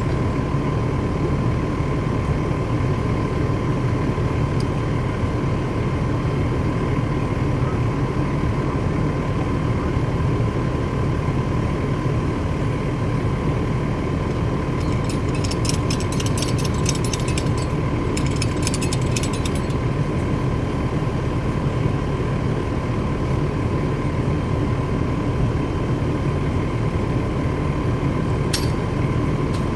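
Fire apparatus running steadily with a low rumble and a constant whine. About halfway through, a burst of rapid clicking lasts roughly four seconds.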